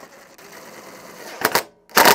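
Power driver with a socket on a long extension spinning the air box cover nut down for about a second and a half, then two sharp clicks, the second the loudest.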